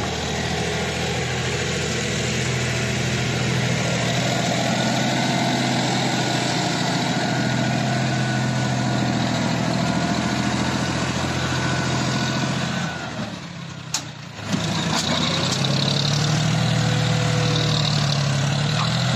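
John Deere 5045 D tractor's three-cylinder diesel engine running steadily while the tractor pushes and levels soil with a front dozer blade. Near the end the engine sound briefly drops away, with a sharp click, then comes back at the same steady level.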